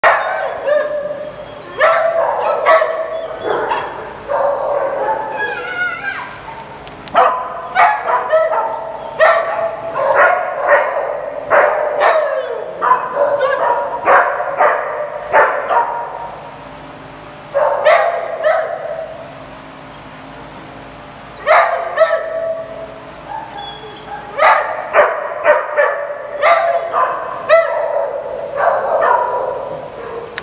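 Several dogs barking and yipping repeatedly in short bouts, with a brief lull around the middle.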